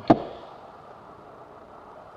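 A single sharp knock just after the start: a hard engine part set down on the workbench or knocked against the engine block, ringing briefly.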